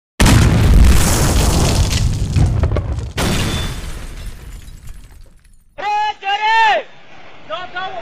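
Intro sound effect: a loud boom with a long rumbling decay and a second hit about three seconds in. Then comes a brief two-part pitched, voice-like tone, and voices start near the end.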